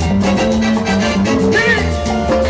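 A live band playing upbeat Latin dance music at full volume: electric bass line, electronic keyboard, and drum kit and percussion keeping a steady beat.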